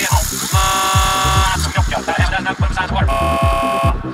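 Full-on psytrance: a fast, driving kick drum and rolling bass line, with held synth chords laid over them about half a second in and again about three seconds in.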